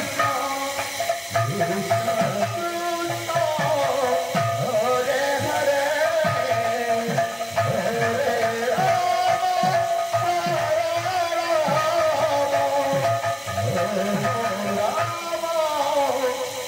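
Live Sambalpuri kirtan music: a loud melody line that bends up and down over drums beaten in a steady, repeating rhythm.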